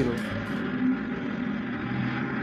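A car-carrier truck's engine running steadily as it drives along a road.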